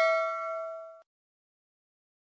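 Notification-bell sound effect: a bright bell ding with several ringing overtones, fading and then cut off abruptly about a second in.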